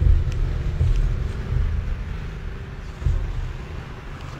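Low rumble of wind buffeting a handheld camera's microphone outdoors, surging and easing about four times.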